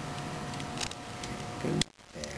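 Faint clicks of a metal jumper-cable clamp being fitted onto the terminal stud of an old wig-wag flasher motor, over a faint steady hum.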